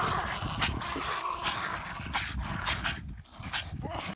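Small terrier-type dogs whining and yipping as they jump and tug at a snow-covered branch, with repeated sharp rustles and snaps of twigs.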